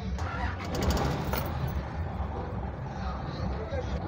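Isuzu FRR truck's diesel engine being started with the ignition key and running at a steady idle, heard from inside the cab.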